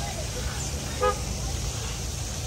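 A single short, pitched toot about a second in, over a steady low rumble.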